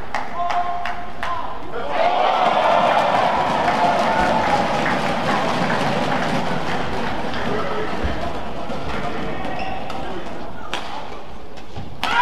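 A few sharp shuttlecock strikes in the first two seconds, then the crowd in a large indoor badminton arena, many voices cheering and chattering together for several seconds. A single sharp racket hit comes near the end as play restarts.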